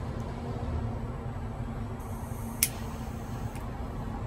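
Steady low background rumble, with a single sharp click about two and a half seconds in as a small metal gum-pack pipe is handled.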